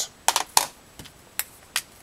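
A handful of sharp, separate clicks and taps from a pocket calculator being set down and a felt-tip marker being picked up, spaced unevenly over the two seconds.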